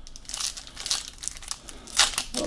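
Foil wrapper of a football trading-card pack crinkling as hands tear it open, in a run of irregular crackly rustles.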